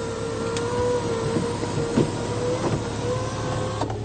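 Electric motor of a Land Rover Discovery 4's front sunroof running with a steady whine as the glass panel closes, stopping just before the end, with a few faint clicks along the way.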